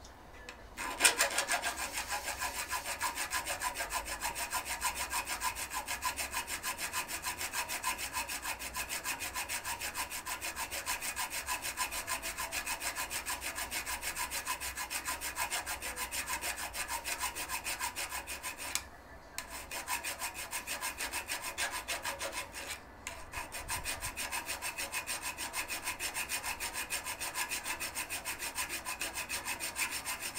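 A hand file rasping rapidly back and forth on metal inside a Weber DCOE carburettor's throttle bore, filing the staked, protruding ends of the butterfly screws flush with the throttle spindle before they are unscrewed. The strokes start about a second in and run evenly, broken by two short pauses.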